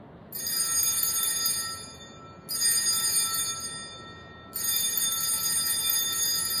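Altar bells rung three times, about two seconds apart, at the elevation of the host at Mass; each ring starts sharply, shimmers with bright overlapping tones and fades.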